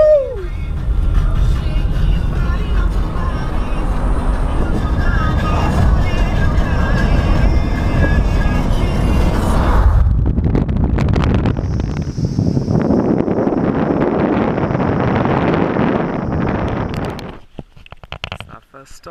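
Car driving along a highway, heard from inside the cabin: steady engine and road rumble. About ten seconds in it changes to a louder, wider rush of passing air and tyre noise, which stops suddenly near the end.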